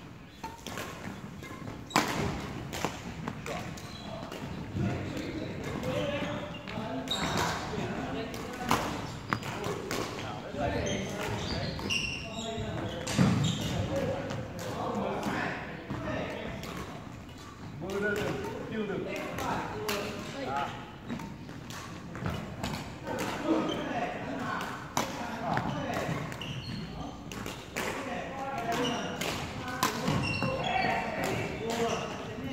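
Badminton rackets striking shuttlecocks: sharp hits at irregular intervals every second or two, echoing in a large hall, with voices in the background.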